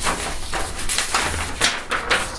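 Sheets of paper rustling as they are handled and lifted, in an irregular run of crisp rustles.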